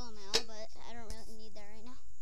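A boy's voice making a run of about five short vocal sounds at a fairly even pitch, not picked up as words, with a sharp click about a third of a second in.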